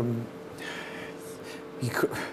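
A man's drawn-out "um" trailing off, then an audible breath drawn in before he speaks again, with a faint steady studio hum underneath.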